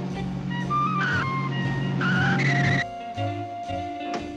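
Cartoon tyre-screech sound effect for a small car braking, heard twice: briefly about a second in, then longer from two seconds until it cuts off near three, over jazzy background music.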